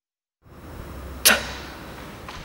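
A speaker pronouncing an isolated voiceless plosive 't': one sharp puff of air released from the mouth, followed by a much fainter short puff about a second later. Beneath it runs a low steady hum that starts and stops with the recording.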